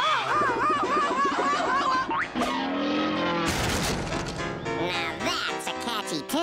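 Lively cartoon music with slapstick sound effects: a wobbling tone, a quick rising glide, then a short crash about three and a half seconds in.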